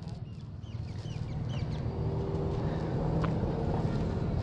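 A steady low motor hum, most likely a vehicle's engine on the street, growing gradually louder. Over it, in the first second and a half, come a few short rising chirps like a small bird's.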